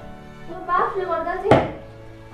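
A wooden paddle knocking against a large metal pan while stirring finger millet, with one sharp knock about one and a half seconds in. Background music with a melody plays between the knocks.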